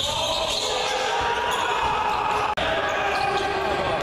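Indoor basketball game sound: a ball bouncing on the court amid voices in the echoing gym. The sound breaks off for an instant a little past halfway.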